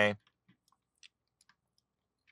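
A few faint, scattered clicks of a computer mouse, just after the end of a spoken word.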